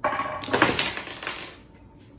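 A small ball rolling down a homemade wooden mini bowling lane and knocking over the miniature pins. The clatter starts at once, is loudest about half a second in and dies away after about a second and a half.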